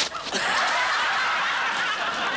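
Studio audience laughing together, breaking out about half a second in and holding steady, after a brief sharp noise at the very start.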